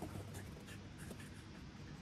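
A Mackee permanent marker's felt tip scratching faintly across a cotton T-shirt in short strokes as a signature is written on it.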